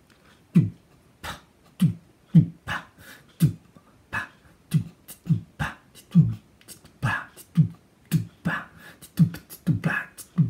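A person beatboxing a drum beat into a microphone: a steady rhythm of mouth-made kick and snare hits, about two a second.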